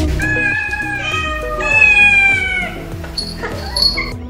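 Cats meowing in long, drawn-out calls, three in a row that overlap, the last and loudest ending a little before three seconds in, over background music.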